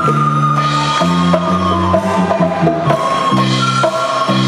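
Live instrumental music from a young ensemble: keyboard and drum kit with acoustic guitar. Sustained notes change about once a second over steady drum hits.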